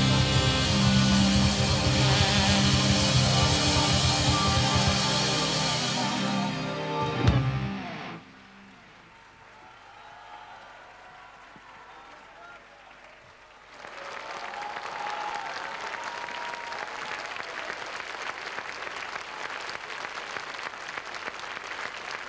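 Live rock band with string orchestra playing the closing bars of a song, ending on a last accented hit about seven seconds in. After a few seconds of quiet, audience applause starts about halfway through and continues.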